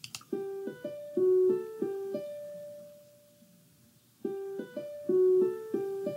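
Zoom's built-in speaker test sound: a short, plucked, piano-like melody of about eight notes ending on a held note that fades, then starting over after about a second's pause. Its playing shows the selected speaker output is working.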